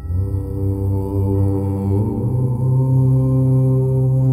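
A long chanted "Om" in a low voice, starting at once and held without a break; about two seconds in its tone changes and settles into a steady hum.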